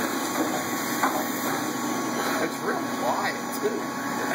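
Daewoo Lynx 200LC CNC lathe running with its hydraulic unit on: a steady, very quiet machine hum.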